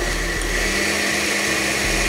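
Countertop blender with a glass jar switching on and running steadily at speed, blending a thick rocoto sauce that has been emulsified with oil.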